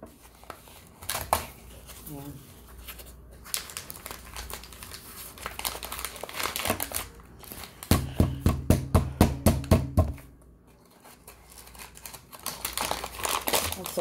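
A new cardboard box of starch being pried and torn open by hand, its cardboard flaps and paper inner liner crinkling and tearing. About eight seconds in there is a two-second run of rapid rough strokes.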